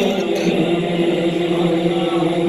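A man singing a naat into a microphone, unaccompanied, holding one long, slightly wavering note.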